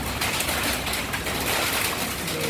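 Windstorm with heavy rain: a steady, loud rushing noise of downpour and wind.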